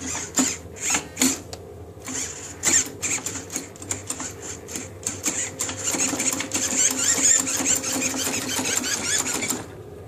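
Giant RC servo steering actuator driving the steering linkage back and forth, its geared motor whirring in short bursts for the first few seconds, then almost without a break from about three seconds in until it stops shortly before the end.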